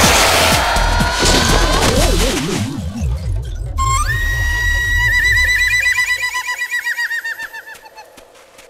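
Cartoon soundtrack music and comic sound effects: a loud dense passage, then a high held whistle-like tone that begins to warble rapidly and fades away near the end.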